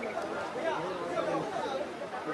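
Indistinct chatter: several people talking at once in a room.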